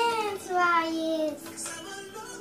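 A child singing wordless drawn-out notes, the second sliding slowly downward and stopping a little past halfway, with fainter steady tones after it.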